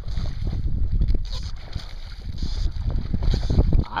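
Wind rumbling on the microphone with irregular handling knocks, as a fish hooked on a fly line splashes and thrashes at the water's surface.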